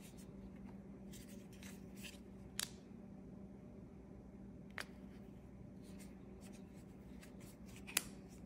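Hands handling a magnetic rechargeable hand warmer, with faint rubbing and a few small sharp clicks as its two magnetic halves are pulled apart and snapped back together. Under it runs a low steady hum.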